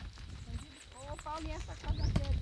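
Outdoor lull with a quick series of about four high, thin bird chirps, then faint voices in the background, over a low rumble of wind on the microphone.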